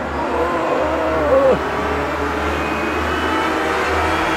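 A car running on the road, a steady low rumble that grows slowly louder, with an engine tone that rises and then falls away about a second and a half in.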